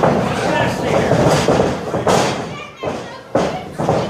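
Crowd voices shouting in a packed hall, then heavy thuds of wrestlers' bodies hitting the ring mat, twice near the end.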